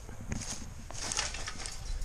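Footsteps through grass and dry leaves, a few soft rustles and crunches over a low steady rumble.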